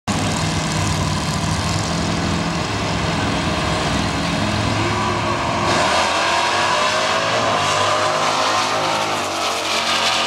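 Two drag-racing cars, a Plymouth Duster and a second Mopar, running steadily at the start line, then launching hard about five and a half seconds in, their engines rising in pitch as they accelerate away.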